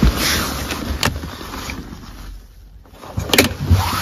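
Rustling handling noise with two sharp clicks, one about a second in and one near the end.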